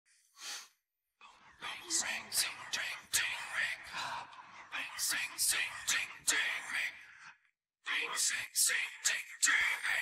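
Isolated rock vocal track with the instruments removed: a man whispering a rhythmic chant of the nonsense words "boomerang, soomerang, toomerang", in phrases with a short pause about three-quarters of the way through.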